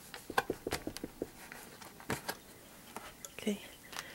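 Folded sheets of watercolor paper being handled and pierced at the spine fold with a hand tack, giving a scatter of sharp, irregular clicks and crackles of paper.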